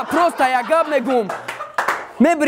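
A man rapping a cappella, with no beat behind him, followed by a few hand claps from the onlookers in the second half.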